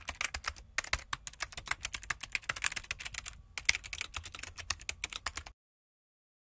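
Typing sound effect: a rapid run of keystroke clicks with a brief pause past the middle, stopping abruptly near the end.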